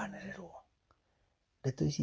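Only speech: a man's voice talking, breaking off for about a second in the middle.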